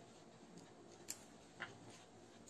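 Near silence, with two faint short clicks about a second and a second and a half in, from a plastic ruler and marker being handled on paper.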